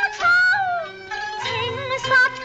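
Cantonese opera singing: a solo voice sings gliding, wavering phrases over instrumental accompaniment. One phrase dies away about a second in and the next begins.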